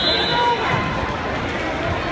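Many overlapping voices in a large gym hall: spectators and coaches talking and calling out in a steady hubbub, with no single voice standing out.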